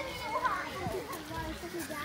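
Children's voices talking and calling out, with no clear words.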